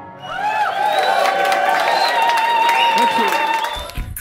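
Small audience applauding and cheering, with voices calling out, as the song ends; the sound cuts off suddenly near the end.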